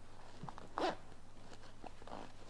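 A boot's side zipper is pulled briefly, making one short zip about the middle, with a few faint handling taps around it.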